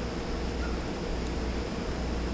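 Steady room tone, a low hum under a soft hiss, with a couple of faint ticks about halfway through.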